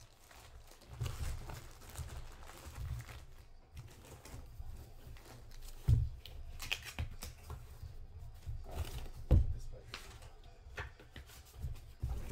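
Clear plastic packaging crinkling and rustling as a sealed jersey is handled. Two sharp thumps of handling come about halfway through and again a few seconds later.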